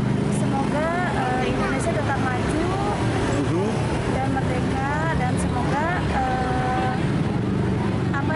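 A person's voice talking over steady road traffic noise.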